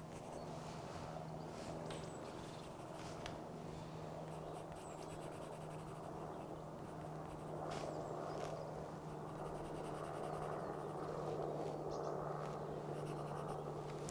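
Pencil scratching on drawing paper in uneven sketching strokes, with a faint steady hum underneath.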